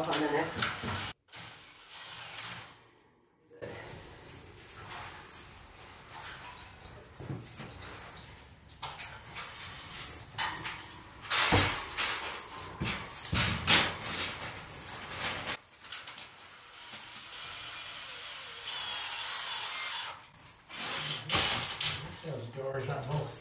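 A cordless drill driving screws in short runs, with a longer steady run near the end and some knocks against the wooden frame. Small aviary finches chirp in short, high calls throughout.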